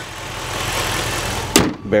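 The hood of a 2007 Dodge Charger R/T being lowered and shut. A building rush of noise ends in a single sharp slam as the hood latches, about one and a half seconds in.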